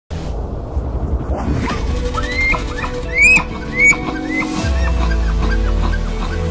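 Dramatic music with a low drone, overlaid by elk bugles: high whistled calls that glide up and hold, the loudest about three seconds in, with fainter ones after it.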